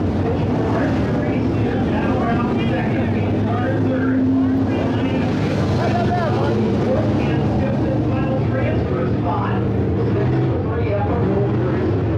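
Indistinct chatter of several nearby people over a steady low drone of dirt-track race car engines.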